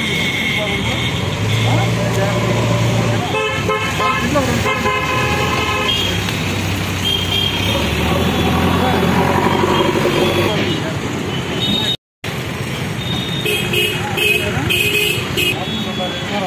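Road traffic with vehicle horns: two short honks about four seconds in and several more short honks near the end, over steady traffic noise and background chatter.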